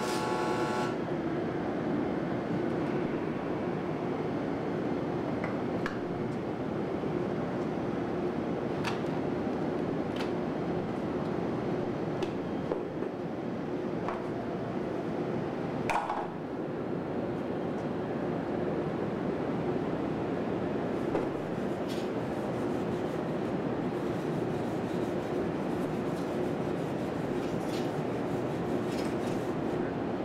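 Stick-welding arc buzzing, cutting off about a second in. Then a steady background hum with scattered light clicks and one metallic knock about halfway through.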